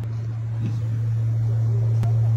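A loud, steady low hum holding one pitch, with faint distant voices above it.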